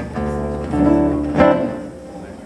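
Guitars fingerpicked, notes ringing, with a sharply picked chord about one and a half seconds in that rings out and fades.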